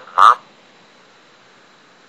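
A computer text-to-speech voice speaks one short, clipped word near the start, the Chinese for 'jute' (黃麻), followed by a steady faint hiss.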